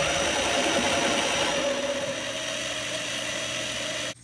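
Power drill running a step drill bit through the thin plastic wall of a project enclosure, a steady whirring cut with a faint whine.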